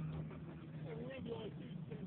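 Background voices of people talking, faint and indistinct, over a steady low hum.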